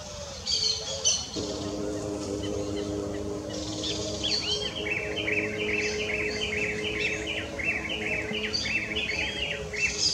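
Birds calling: a few harsh calls about half a second in, then from about four seconds on a long even series of short chirped notes, roughly three a second, over a low steady hum of several tones.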